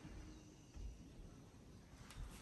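Near silence: faint outdoor background with a soft low bump just under a second in.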